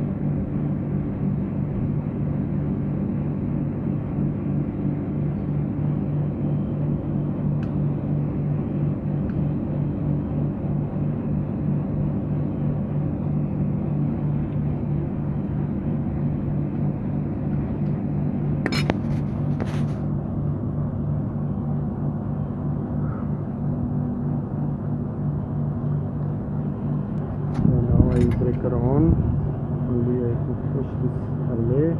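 Three-phase air-conditioner compressor running with a steady low hum, just after its replacement and rewiring. A couple of sharp clicks come about two-thirds through, and a louder knock near the end.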